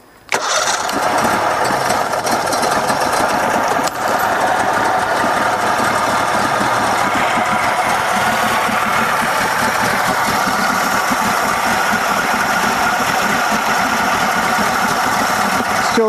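Mercury 60 hp three-cylinder two-stroke outboard, lightly choked, catching suddenly a moment in and then running steadily in neutral.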